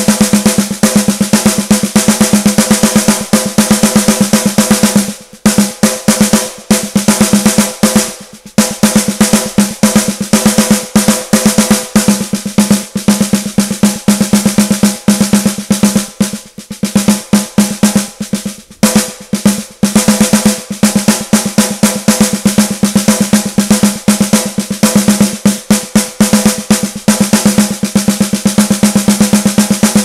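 A sampled snare drum, center hits from the MINDst Drums virtual kit, plays a fast continuous snare roll. The strokes vary in loudness from hit to hit because the MIDI velocity randomizer is turned up, with a few brief drops in level along the way.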